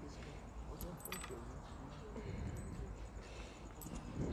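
Faint murmur of voices in the background, with a few light clicks and a short rattle about a second in and again near the end.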